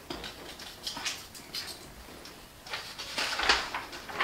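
Sheets of paper rustling and crinkling as they are picked up and handled, with a louder flurry of rustles about three seconds in.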